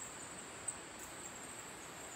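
Night insects keeping up a steady, high-pitched chorus over faint hiss, with one small click a little over half a second in.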